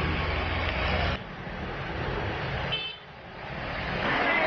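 Street traffic in floodwater: a motorbike engine runs under a wash of water noise, which stops abruptly about a second in. Quieter street noise follows, with a short horn beep near three seconds.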